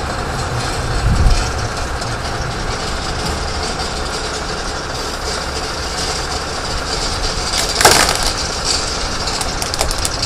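Heavy recovery truck running under load as a jackknifed semitrailer is dragged back onto the road, with rumbling and clanking from the rig. A low thud comes about a second in, and a sharp loud crack just before eight seconds.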